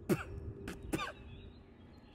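A man's short non-speech vocal sounds, a quick throat-clearing or cough-like noise and two brief ones after it, all within the first second.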